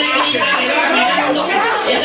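Loud chatter of many people talking and calling out at once at a crowded party.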